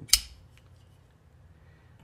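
One sharp metallic click from a Reate Yeager M titanium framelock folding knife being handled, followed by faint handling ticks.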